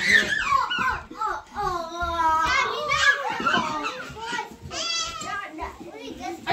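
Children's high voices calling out and chattering over one another as they play in a small room.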